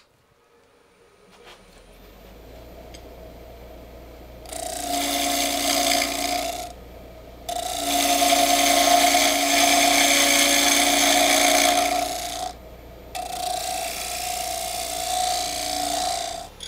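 Wood lathe motor coming up to speed with a low hum, then a gouge cutting a spinning goncalo alves blank in three passes of a few seconds each, with short pauses between. Each cut is a loud rushing scrape with a steady ringing tone in it.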